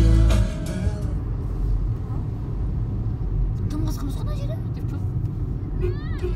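Steady low rumble of road noise inside a moving car's cabin, after music fades out in the first second.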